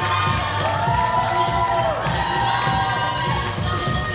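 Audience cheering and screaming. It is loud and continuous, with many long high-pitched shrieks that hold and then fall off.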